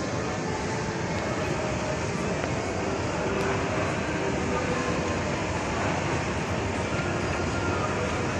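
Mall escalator running as it is ridden: a steady mechanical rumble from its moving steps and drive.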